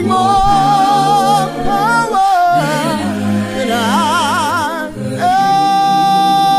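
A cappella gospel singing: a high voice holds long notes with wide vibrato over sustained lower voices, ending on a long held note.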